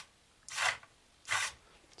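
Small hobby servos driving 3D-printed plastic eyelids: two short whirring strokes about a second apart as the eye shuts and opens.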